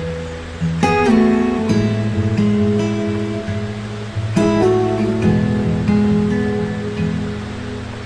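Soft instrumental meditation music on guitar. Chords are plucked about a second in and again just past the middle, each ringing out and slowly fading.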